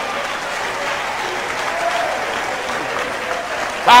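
A church audience applauding steadily, with faint voices under it.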